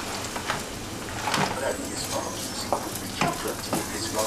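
Frozen chicken fried rice sizzling in a hot wok while a spatula stirs it, with short scrapes and clicks of the spatula against the pan scattered through the steady sizzle.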